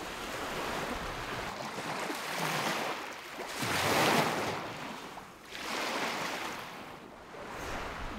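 Small waves washing onto a pebble beach, rising and falling in surges, the biggest a little under four seconds in and another about six seconds in.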